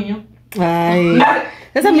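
A woman's loud, drawn-out exclamation, held on one pitch for under a second and then falling away, followed near the end by another excited burst of voice.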